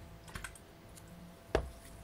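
A few light clicks, then one sharp knock about one and a half seconds in.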